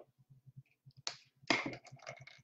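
A few short, sharp clicks or taps: one about a second in and a louder one about a second and a half in, followed by several smaller clicks. Under them runs a faint, rapid low pulsing.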